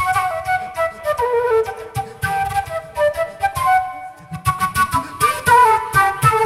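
Concert flute playing a flowing melody through a microphone, over a steady rhythmic beat of short percussive hits.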